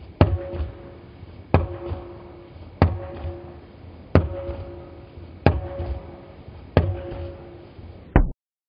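Rubber playground ball bouncing on an outdoor court surface in a slow, steady two-handed push dribble. There are six bounces, about one every 1.3 seconds, each a sharp smack followed by a brief ringing tone from the ball.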